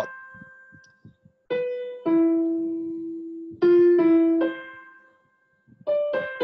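Roland digital piano playing a slow right-hand melody in single notes, each struck and left to ring and fade, with a short pause near the end.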